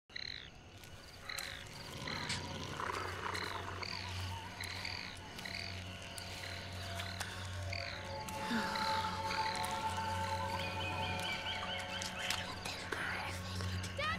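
Film soundtrack of forest ambience: an animal chirps over and over, about twice a second, over a low sustained music drone. Held music tones join about eight seconds in.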